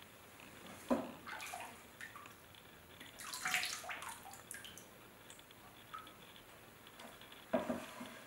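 Liquid glaze splashing and dripping back into a plastic bucket as a bowl is dipped in and lifted out, with the main pouring splash around the middle. Sharp knocks about a second in and near the end.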